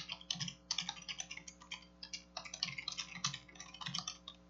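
Typing on a computer keyboard: a quick, irregular run of key clicks with short pauses between bursts.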